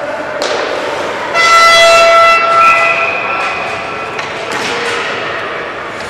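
A horn sounds once over the ice-rink noise for about two seconds, a steady reedy tone starting about a second and a half in. A few knocks come before and after it.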